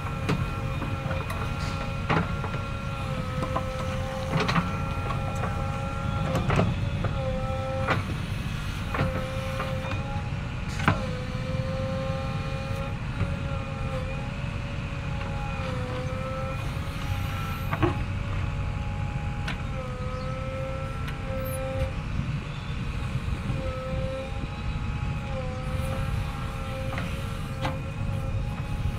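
JCB 3DX backhoe loader's diesel engine running under working load, with a steady whine whose pitch dips briefly again and again as the hydraulics take load. Sharp clanks from the backhoe arm and bucket come every few seconds.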